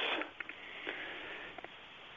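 A person's audible breath in a pause between phrases of speech, a soft hiss with a few faint mouth clicks.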